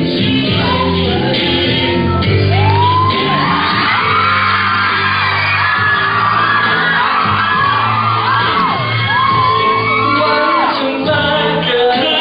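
A pop song with singing plays loudly through a hall's sound system. From about two and a half seconds in until near the end, an audience screams over it in high, rising-and-falling shrieks.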